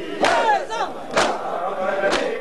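A crowd of mourners chanting in unison with matam: hands strike chests together about once a second. Two strikes fall here, with the crowd's voices rising and falling between them.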